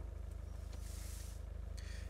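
Land Rover Discovery 1 engine running with a steady low rumble and a fast, even pulse, with a faint brief hiss about halfway through.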